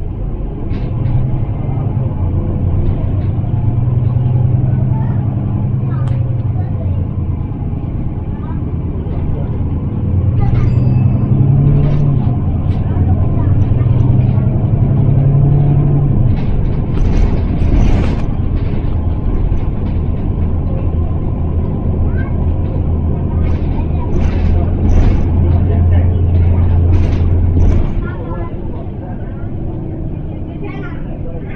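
Mercedes-Benz Citaro city bus's diesel engine heard from inside the passenger saloon: a loud, low drone whose note shifts up and down through the first half, then holds steady until it drops away near the end. Scattered clicks and rattles through the second half.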